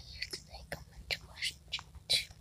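A person whispering in a string of short, hissy bursts.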